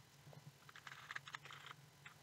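Faint typing on a computer keyboard, a quick run of key clicks about a third of a second in, as a file name is typed.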